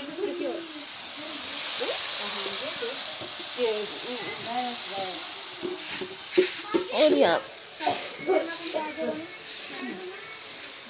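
Cubed potatoes frying in oil in a steel kadhai, a steady sizzling hiss that swells and fades over the first half. Faint voices in the background, and a few light clicks and knocks in the second half as spice containers are handled.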